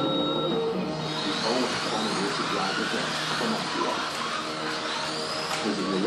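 Slot cars' small electric motors whining. Several pitches rise and fall as the cars speed up and slow through the track's curves, starting about a second in.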